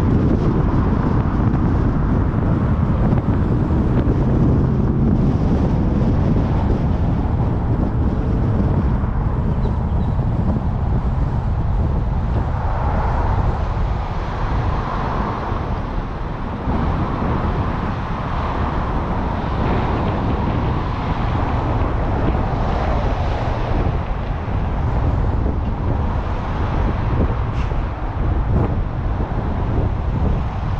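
Wind buffeting the microphone of a camera on a moving car, with tyre and traffic noise beneath it.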